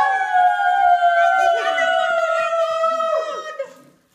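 A clown's toy horn sounding one long, loud note of several pitches at once. The note swoops up, sags slowly in pitch and cuts off shortly before the end.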